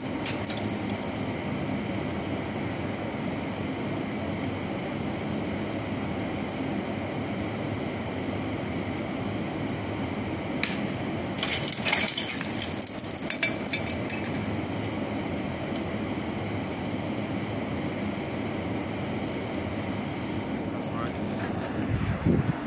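Steady outdoor city background noise, with a few sharp clinks or knocks about eleven to fourteen seconds in.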